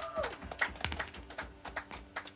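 A sung note ends at the start, followed by scattered handclaps from a few people, irregular and thinning out near the end. A low instrument note keeps ringing faintly underneath.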